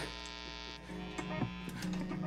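Steady electrical hum and buzz from idle guitar and bass amplifiers, with the brighter part of the buzz cutting off just under a second in and a few faint clicks.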